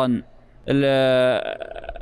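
A man's voice holding one steady, flat-pitched hesitation sound for under a second, between sentences of a lecture.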